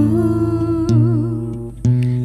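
Worship vocalists singing a slow song to acoustic guitar, holding a long note with vibrato over low bass notes, with the guitar chord changing about a second in and again near the end.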